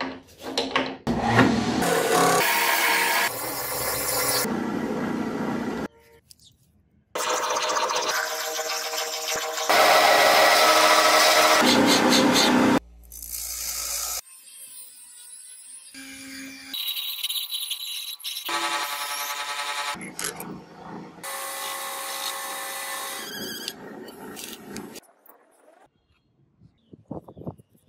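Machining a steel bolt: a metal lathe turning it and a bench grinder wheel grinding steel, in separate loud stretches that start and stop abruptly, with short quiet gaps between them.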